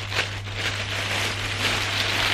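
Plastic wrapping rustling and crinkling as it is handled, with a few sharper crackles, over a low steady hum.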